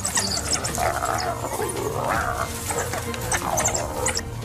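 Spotted hyenas and African wild dogs calling during a scuffle: wavering mid-pitched moans and whoops with short high chirping twitters. Background music with a steady low bass plays throughout.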